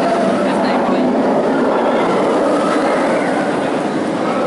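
A Bolliger & Mabillard inverted roller coaster train running along its steel track with riders aboard, a steady, loud noise from the wheels on the rails.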